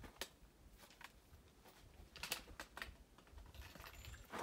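Faint, sparse clicks and taps of a hiker's boots and trekking pole on rock while scrambling up a steep rock slab, with a small cluster of clicks a little past two seconds in.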